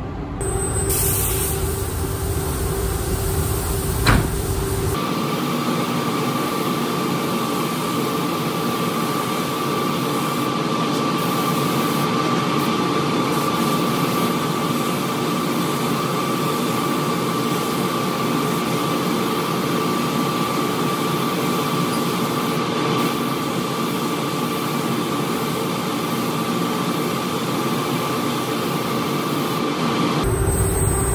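Paint spray gun hissing steadily with a faint high whistle as base coat is sprayed, over the hum of the booth's ventilation. It is preceded by a few seconds of lower hum and a sharp click.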